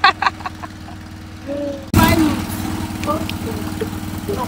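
A small engine, most likely a petrol generator, running steadily with an even low hum. About two seconds in the sound abruptly grows louder and rougher, and a woman laughs briefly at the start.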